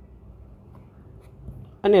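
Faint scratching of a stylus writing on a tablet screen, with a voice starting to speak near the end.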